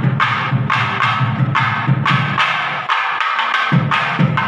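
Rhythmic percussion music: a drum beat of about two strokes a second, each with a sharp, bright strike over a deep drum tone. The deep drum drops out for under a second near the end while the bright strikes go on.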